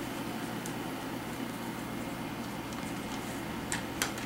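Faint steady room hiss while a smartphone's plastic back cover is pried off by fingernail, with one small sharp click near the end as the cover comes loose.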